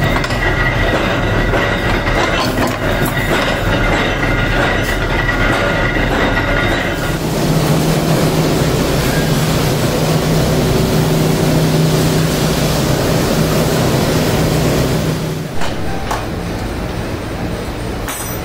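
Cutlery-factory machinery running. For the first seven seconds there is a steady high whine with clicks. Then a second machine takes over with a louder steady hum and a wash of noise, which drops off about three seconds before the end.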